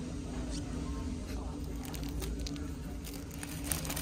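Store ambience: a steady low hum, with faint scattered clicks and rustles that grow more frequent in the second half.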